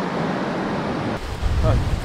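Steady wash of surf breaking on a sandy beach, with wind buffeting the microphone; the noise eases a little past the middle and a voice begins near the end.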